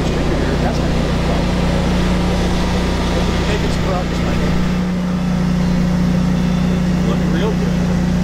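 An engine or motor running at a steady speed: a loud, constant low drone that holds without change.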